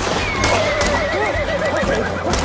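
A horse whinnying: one long neigh with a trembling, wavering pitch that starts about half a second in and runs on. It comes just after a sharp crack at the very start.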